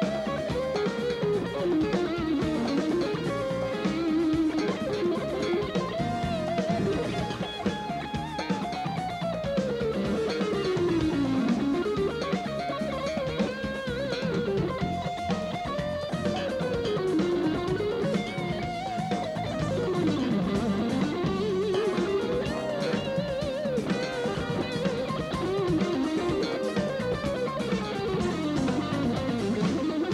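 Electric guitar solo on a Stratocaster-style guitar, with wavering held notes and several long descending runs, over a live rock band's drums and bass.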